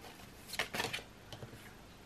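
Tarot cards being handled: a few faint clicks and rustles as a card is drawn from the deck and brought to the spread, bunched from about half a second to one second in, with softer ticks after.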